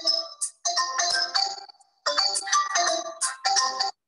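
A phone ringtone playing a melody of steady electronic tones in short phrases, with a brief break about halfway, cutting off suddenly near the end.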